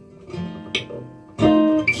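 Taylor acoustic guitar playing a gentle chordal accompaniment between sung lines: a few soft plucked chords that ring on, then a louder strum about two-thirds of the way through.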